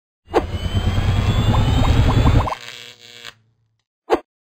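Electronic logo-intro sting: a dense bass rumble under a rising sweep, with a quick run of short blips. It stops sharply about two and a half seconds in and leaves a short fading tail.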